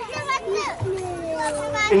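Children's voices: a brief sliding call, then one long, slowly falling drawn-out voice.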